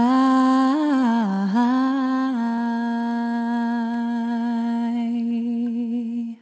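A woman's solo voice singing into a microphone, unaccompanied. A short phrase rises and falls, then about two and a half seconds in she settles on one long held note.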